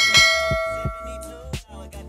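A bell chime sound effect strikes once and rings out, fading over about a second and a half. It plays over hip hop background music with a steady beat.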